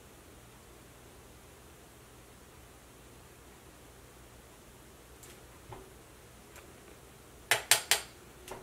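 Quiet room hiss with a few faint clicks, then near the end three sharp clicks in quick succession, like a makeup brush or small plastic makeup item being knocked or set down.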